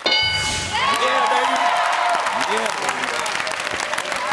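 A short electronic game-show board sound effect with several steady pitches, then studio audience applause with voices shouting over it.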